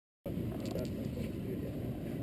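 Silence, then from about a quarter second in a steady low rumble of indoor shooting-range room noise, such as ventilation.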